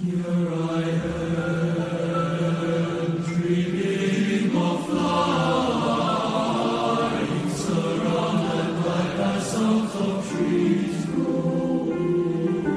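Teenage boys' choir singing slow, sustained chords, entering together loudly at the start after a quiet moment.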